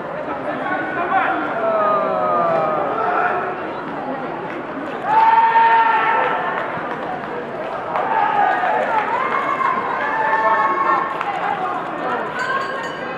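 Several voices calling out over the chatter of an arena crowd during a karate kumite bout, with one loud, drawn-out shout about five seconds in.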